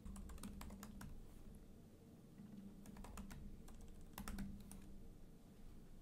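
Faint typing on a computer keyboard: short runs of keystrokes with brief pauses between them.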